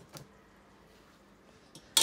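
Kitchenware being handled: a small knock just after the start, a quiet pause, then a sharp clank right at the end as a utensil is set down or picked up against the pot and bowls.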